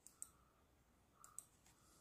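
Near silence with a few faint clicks at a computer, in two close pairs about a second apart.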